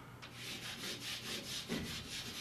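Chalk scratching on a blackboard in a run of quick short strokes as a line is drawn.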